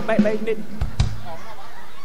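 A man's voice over a stage PA calling out briefly, followed by two dull knocks about a second apart.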